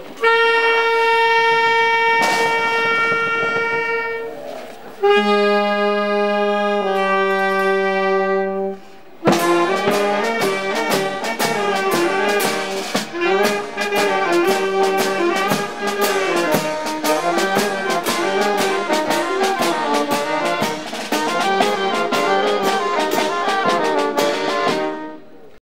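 Small street band of saxophones, clarinet, tuba and drums playing. It holds a few long notes first, then from about nine seconds in plays a lively tune over steady drum beats.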